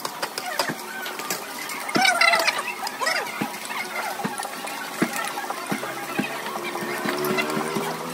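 Busy restaurant background: diners' chatter with frequent sharp clinks of dishes and cutlery, the voices loudest about two seconds in.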